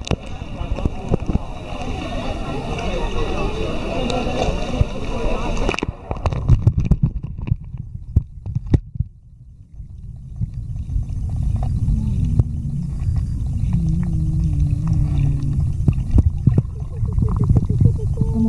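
Muffled water noise picked up by a camera held underwater: a low rumbling with scattered knocks and clicks against the housing. The sound changes abruptly about six seconds in, from a busier mid-range churn to a deeper rumble.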